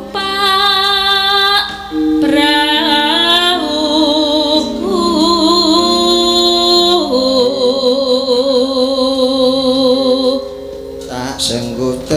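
A female sinden singing a slow Javanese vocal line with long, wavering held notes over steady sustained accompaniment. The singing breaks off about a second and a half before the end.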